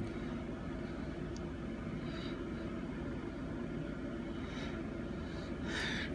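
Steady low background hum of room noise, even throughout with no distinct events.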